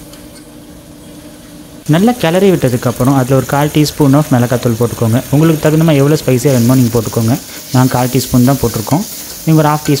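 Onion and tomato frying in oil in a pressure cooker, stirred with a steel ladle, faint at first. From about two seconds in, a man's voice talks loudly over it.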